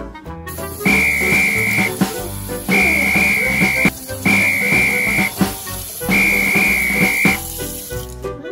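Four long, steady whistle tones, each lasting about a second, over cheerful background music, with the hiss of a running kitchen tap underneath.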